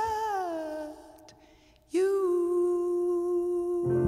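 A woman's jazz vocal, unaccompanied: a held note slides down and fades out about a second in, a short pause follows, then she holds a new long, steady note. Just before the end, a low accompaniment comes in beneath her.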